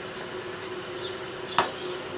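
Steady low background hum with one sharp click about one and a half seconds in.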